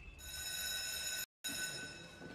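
A steady high-pitched ringing tone, starting just after the beginning, cut off by a brief moment of dead silence a little past halfway, then going on and fading out.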